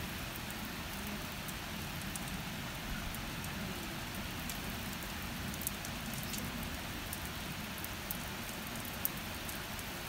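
Steady rain falling, with scattered sharp ticks of individual drops hitting nearby.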